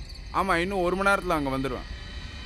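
A man's voice speaking for about a second and a half, over a steady high chirring of crickets.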